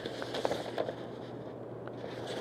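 Sheets of printer paper being leafed through and handled: soft rustling with a few light crackles and taps, busiest in the first second, with one more tap near the end.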